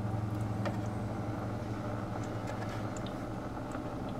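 Steady low electrical hum from aquarium equipment, a constant drone with a few faint clicks over it.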